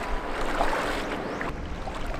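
Shallow seawater sloshing and splashing around legs as someone wades through a shin-deep rock pool.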